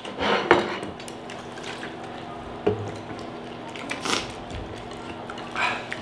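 A few brief clinks and knocks of chopsticks, plates and drinking glasses on a table while eating and drinking, the sharpest about four seconds in, over a steady low room hum.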